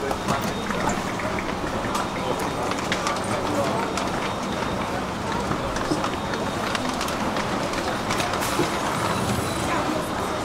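Indistinct voices of passengers crowding a train door, mixed with scattered knocks and footsteps as people and their luggage climb the steps aboard.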